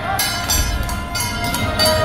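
Temple procession percussion: metal cymbals clashing about twice a second over ringing gongs and low drum beats.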